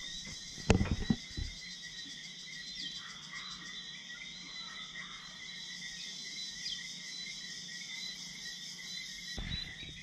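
Evening chorus of crickets and frogs: a steady, shrill, finely pulsing insect trill with occasional short rising chirps. A few loud knocks about a second in.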